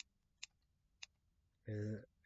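Three short, sharp clicks spread over about a second, with near silence between them, then a man's voice starts again near the end.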